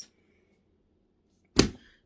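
Near silence, then a single sharp thump about one and a half seconds in, dying away quickly.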